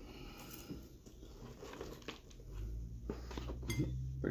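Faint rustling and handling as a hand picks a piece of fried chicken out of a cardboard bucket, with a low hum coming up in the second half and a sharp click near the end.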